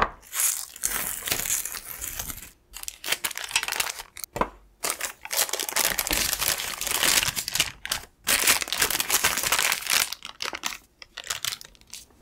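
Baking parchment paper crinkling as it is handled and peeled away from a slab of set chocolate, in several stretches with brief pauses.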